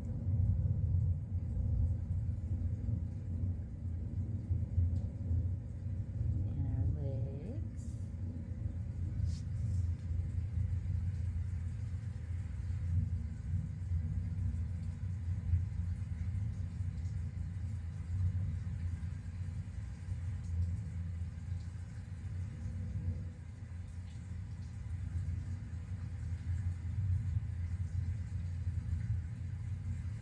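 Thunderstorm sounds playing from a recording: a steady low rumble of thunder that carries on without a break.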